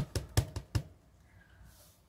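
Clear acrylic stamp block carrying a silicone stamp tapped repeatedly onto a black ink pad to ink it: four or five quick knocks within the first second.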